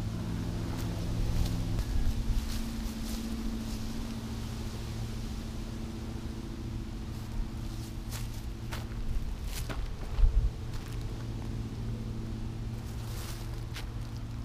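A motor vehicle engine idling steadily at one even pitch, with a few light clicks and a short low thump about ten seconds in.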